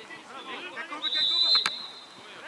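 Referee's whistle blown once, a steady shrill tone lasting about a second, starting about a second in, as the referee signals a stoppage.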